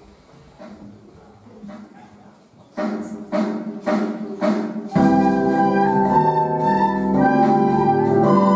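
A quiet murmur, then four struck keyboard chords about half a second apart, and from about five seconds in a children's recorder ensemble comes in, playing held notes together over the accompaniment.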